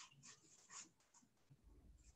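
Near silence with faint, short rustling noises, several a second.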